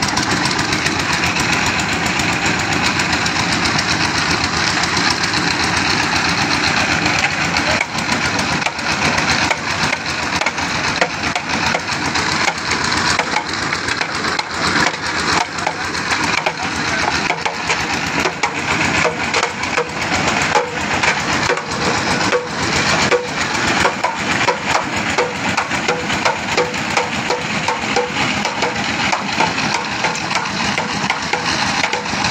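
Engine-driven winch at a well being dug, running steadily while it hoists a load on its cable. From about eight seconds in its sound turns into a rapid, even beat.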